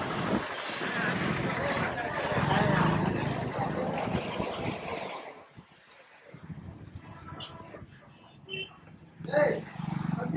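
Road traffic passing close by: a loud rush of vehicle noise that peaks about two seconds in and dies away by the halfway point, with a short high squeak at its loudest. After that it is quieter, with another brief squeak and voices near the end.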